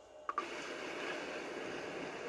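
A brief click as a recording starts, then steady low background hiss.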